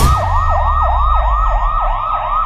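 Electronic emergency-vehicle siren in a fast yelp, sweeping up and down in pitch about four times a second, with a low rumble beneath.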